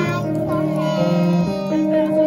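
A group of young children singing a song together over instrumental accompaniment, in held notes that step from pitch to pitch.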